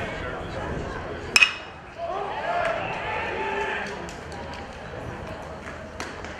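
A metal baseball bat hits a pitched ball about a second and a half in, one sharp ping with a brief ring, followed by voices calling out.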